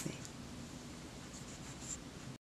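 Quiet room tone with faint, light rustling, a little more of it in the second half.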